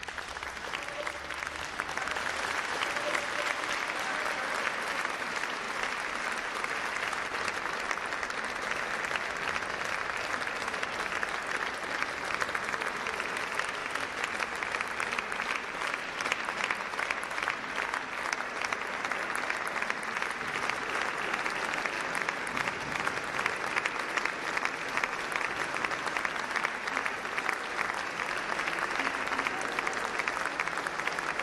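Audience applauding: the clapping builds over the first two seconds and then holds steady and dense.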